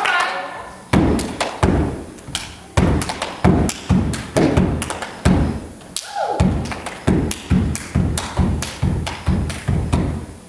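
Loud, regular thumps on a steady beat, about one and a half a second, each with a short decaying tail, with music underneath.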